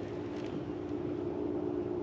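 Electric trolling motor running with a steady, even hum as the boat is held and nudged into position over the fish.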